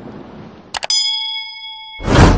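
Two quick mouse-click sound effects about three-quarters of a second in, followed by a bright bell ding that rings on steadily: the notification-bell chime of a YouTube subscribe-button animation.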